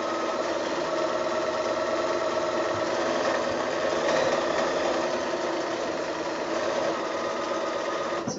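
Bernina electric sewing machine running steadily, stitching a straight-stitch hem along cotton fabric.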